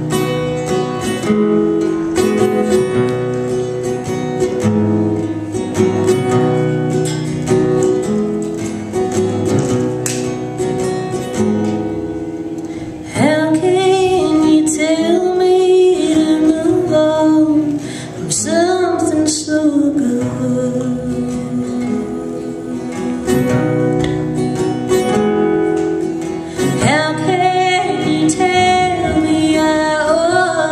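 Acoustic guitar strummed as a song intro, with a woman's singing voice coming in about halfway through; the guitar carries on alone for several seconds before she sings again near the end.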